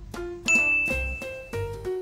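A single bright, high ding starts sharply about half a second in and rings on for about a second over background music with a regular beat.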